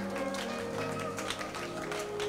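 Worship music accompaniment playing softly, with held chords and light tapping percussion, under a pause in the sung praise chant.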